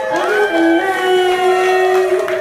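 A group of voices holding one long drawn-out note together, sliding up into it and sustaining it, with a little hand-clapping around it.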